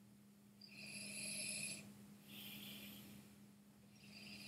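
A person's breathing at a whisky glass held to the lips: two soft, airy breaths of about a second each, the first about a second in and the second a little past halfway.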